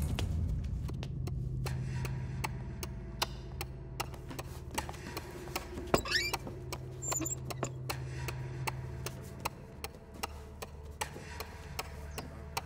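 Clock ticking steadily over a low, even hum of room tone.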